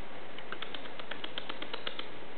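Smooth fox terrier puppy's claws clicking on a hard wooden floor as it trots: a quick run of light ticks, about eight a second, starting about half a second in.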